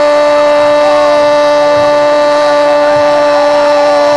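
A radio football commentator's long, held goal cry: a single loud, high-pitched, shouted 'gooool' sustained at one steady pitch without a breath.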